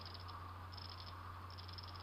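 Faint rapid clicking of the pawls ratcheting inside a Sturmey Archer XRF8 8-speed internally geared hub as its gear unit is turned by hand, in two short runs about a second apart, over a steady low hum. The ratcheting is the pawls slipping over their ratchet teeth while a faster gear stage outruns a slower one.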